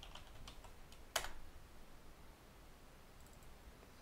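Computer keyboard being typed on, faint: a few light keystrokes, then one louder key press about a second in.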